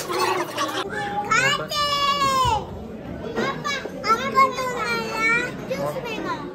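A young child's high-pitched voice calling out in two long, drawn-out cries whose pitch bends and falls, over other voices in the room.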